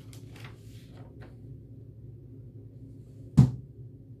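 A single loud thump about three and a half seconds in, over a steady low room hum, with faint rustling in the first second.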